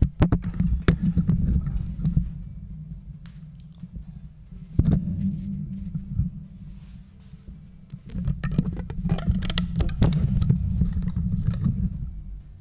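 Microphone handling noise as the mic is moved and fastened into a makeshift stand with a rubber band: low rumbling rubs and bumps, with sharp knocks on the mic near the start, about five seconds in, and in a cluster near the end.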